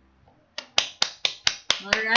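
A quick, even run of sharp clicks, about four a second, starting about half a second in, with a person's voice coming in near the end.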